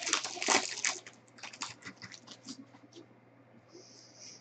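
Foil trading-card pack wrapper crinkling as it is torn open, loudest in the first second. A run of lighter crackles and clicks follows as the cards and wrapper are handled.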